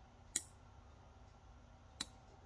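A small 5-volt relay module clicking once as it switches, triggered by the Hall-effect sensor sensing a magnet. A second click comes right at the end.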